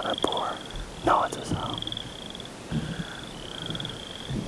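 High, rapid pulsed trills from a calling animal, each about half a second long, repeated several times with short gaps, under faint whispered speech.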